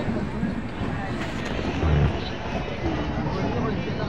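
Steady rumble of a moving passenger train heard from an open coach doorway, with people talking nearby and a low thump about two seconds in.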